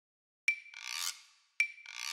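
Logo-animation sound effect: a short high ping followed by a raspy swish, heard twice, about a second apart. The first begins about half a second in, and the second is cut off at the end.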